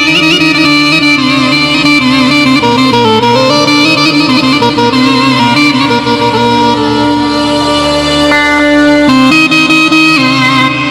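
Korg synthesizer keyboard playing an ornamented mugham melody over a steady held drone note, with no singing.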